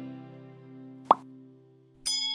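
Sustained background music notes fading away. About a second in, a single short click-pop sound effect goes off, the kind laid on a subscribe-button animation.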